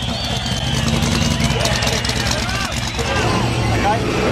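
Supercharged 8.2-litre Chevy V8 burnout engine running steadily at low revs with a pulsing beat, with people's voices over it.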